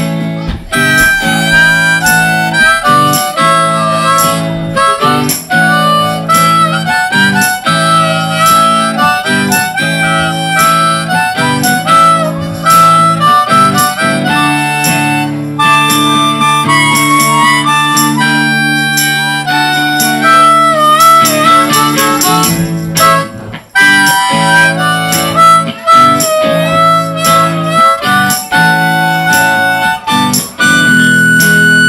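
Live blues-rock band: a harmonica solo played into a vocal microphone over electric guitar and drums. In the middle of the solo a long chord is held for several seconds.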